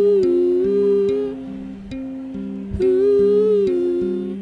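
Electric bass guitar playing a repeating pattern of plucked notes, with a wordless humming voice held over it in long wavering phrases: one ends just over a second in, and the next starts near three seconds.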